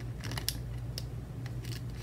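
Metal tweezers picking at a sheet of alphabet letter stickers, lifting a letter off its backing: a few short, sharp clicks and crinkles, clustered early and again about a second in, over a steady low hum.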